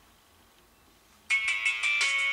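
Near silence, then music starts abruptly a little over a second in: the soundtrack of the LG Viewty KU990's Muvee Studio 'modern' style movie playing from the phone's small loudspeaker, a quick run of repeated notes over steady tones.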